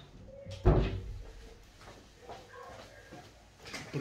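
A person moving about a small room: one loud, deep thump about a second in, then faint knocks and shuffling as they come back to the microphone near the end.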